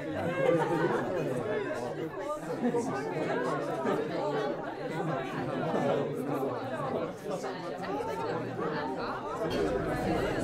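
Indistinct chatter of many guests talking at once around dining tables, with no single voice standing out, held at a steady level throughout.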